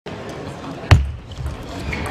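Table tennis serve: one sharp, loud crack with a low thud about a second in, followed by a few fainter ticks of the celluloid ball on the table and bat.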